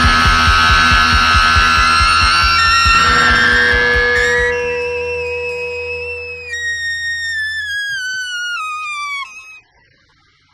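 Heavy psychedelic blues-rock band playing loud, with a fast pulsing low end. About halfway through the band thins out, leaving high held notes that slide downward in steps. The music cuts off sharply near the end.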